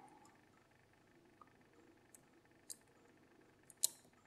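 Faint, scattered clicks of a steel hook pick probing the spring-loaded wafers of a Miwa DS wafer lock under tension, about five light ticks, the sharpest just before the end.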